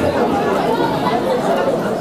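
Speech only: a man talking into microphones, with other voices chattering over him.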